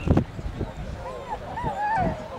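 A dog whining in a string of high whimpers that rise and fall in pitch, beginning about a second in. A loud thump comes just before it, at the very start.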